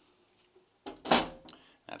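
Metal door of a fire alarm control panel being shut: a short click, then a louder latch-and-close bang about a second in.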